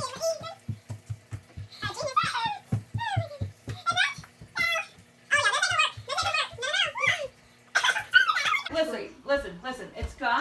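Women's voices giggling and laughing over a fast, even low pulse that stops near the end.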